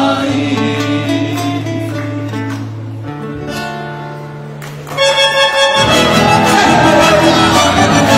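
Paraguayan folk band of acoustic guitars, keyboard and bandoneón: a sung serenade closes on long held chords that slowly die away, then about five seconds in a loud, fast instrumental dance tune suddenly strikes up.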